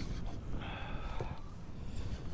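A person's breathy exhale lasting about a second, over a low steady rumble.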